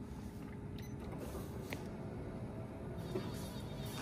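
Faint whir of the Aston Martin Lagonda's electric power antenna motor as the radio is switched on, with a couple of light clicks.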